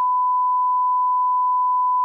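Electronic test tone: one steady, unbroken high beep held at a single pitch, with no other sound around it.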